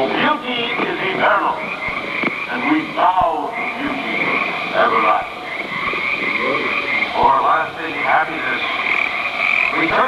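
A chorus of frogs croaking: a steady, high, pulsing trill runs underneath, with louder croaks that rise and fall in pitch every second or so.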